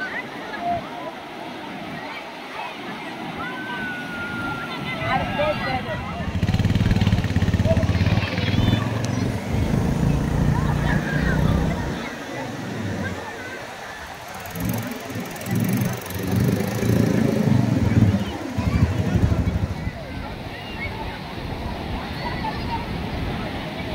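A beach quad bike's engine running close by in two spells, from about six seconds in and again from about fourteen seconds in, the second spell rising and falling. Beach crowd chatter runs underneath.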